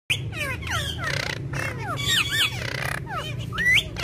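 Budgerigars chattering and warbling: a fast, continuous run of short falling and rising whistles and chirps, with a louder rising whistle near the end.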